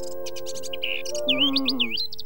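Birds chirping in many quick, rising and falling calls over background music of steady held notes that change chord about a second in.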